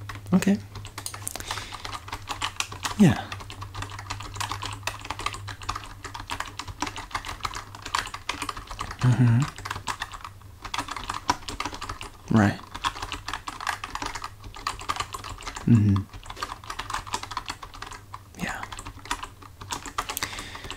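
Typing on a computer keyboard: a steady run of quick, soft key clicks.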